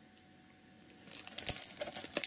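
Plastic shrink-wrap on a cardboard knife box crinkling as it is handled. It is quiet for about the first second, then comes a run of crackles and small clicks.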